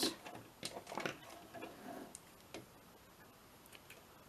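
A few separate light clicks and taps from handling at an electric sewing machine, just after it stops stitching. They come thickest in the first second and then thin out.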